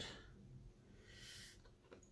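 Near silence: quiet room tone, with one short soft hiss a little over a second in.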